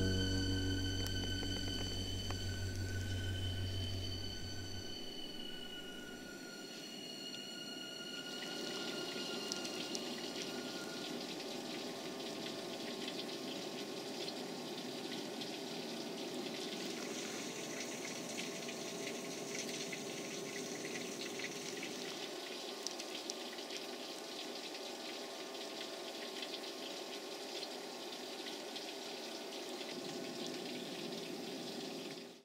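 Background music, a plucked guitar track, fades out over the first several seconds. It leaves a steady hiss of water with many faint crackles.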